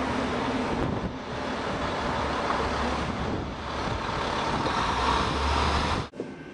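Street traffic noise: a steady rumble of road traffic with a vehicle passing, growing louder near the end, and some wind on the microphone.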